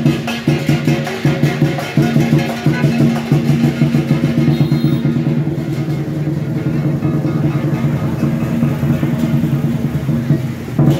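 Live lion-and-dragon-dance percussion: a large drum beaten in rapid, continuous rolls with cymbals clashing along, the cymbals thinning out about halfway while the drum keeps going.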